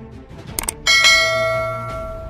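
Subscribe-animation sound effect: a quick double mouse click, then a bright bell chime that rings out and fades over about a second, over faint background music.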